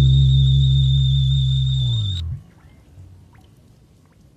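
Fender Precision electric bass and the song's recording ending on a final low note held for about two seconds, then cut off suddenly, a thin high tone in the mix stopping with it. Faint room noise with a few light clicks follows.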